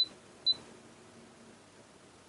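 Air conditioner indoor unit giving two short high-pitched beeps about half a second apart, acknowledging a temperature-setting command.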